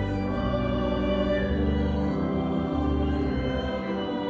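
A church choir singing a hymn in long held notes, with instrumental accompaniment holding low sustained notes beneath the voices.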